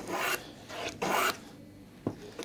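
Small hand plane cutting shavings from a guitar body's wood in two short strokes about a second apart, planing in the neck break angle.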